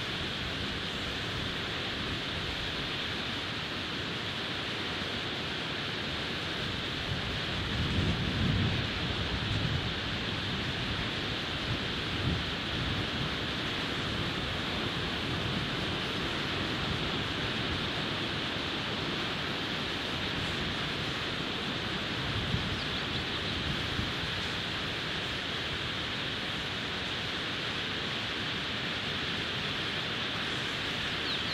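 Steady hiss of flowing river water, with low rumbling bumps on the microphone a few times, the strongest about eight to ten seconds in.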